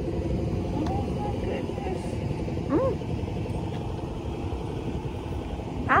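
Steady low outdoor rumble of a parking lot, with vehicle noise and wind buffeting the phone's microphone. A short hummed voice sound comes about three seconds in.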